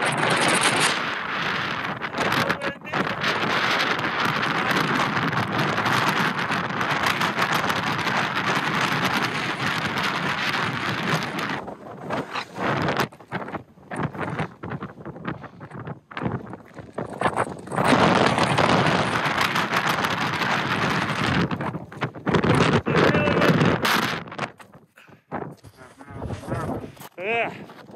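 Strong wind buffeting the microphone in loud gusts: unbroken for about the first ten seconds, then coming and going with brief lulls.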